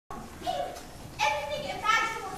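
Several young voices chattering over one another, with no clear words, in a large room.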